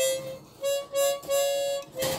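A large Swan chromatic harmonica blown by a first-time player: about four short notes, then one longer held note, all at nearly the same middle pitch.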